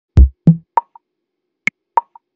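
Intro sting of percussive electronic hits: two deep thuds in the first half second, then a few short, higher plops and clicks spaced apart.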